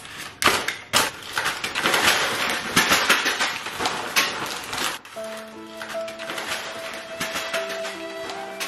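Paper coffee bags and a plastic mailer bag rustling and crinkling, with many quick light taps and clatters as handfuls of packets are tossed and drop. About five seconds in this gives way to music with steady held notes.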